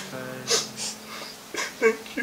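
Several short, breathy bursts of a person's laughter over soft background music with long held notes.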